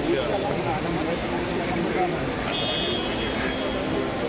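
Crowd chatter: many people talking over one another at once in a steady din, with a brief high tone about two and a half seconds in.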